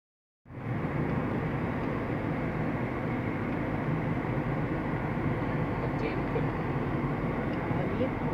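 Steady rumble of a moving vehicle, with road and wind noise, starting about half a second in.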